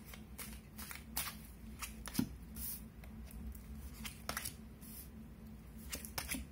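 A deck of tarot cards being shuffled and handled by hand: a run of short, irregular crisp flicks, several a second, over a low steady hum.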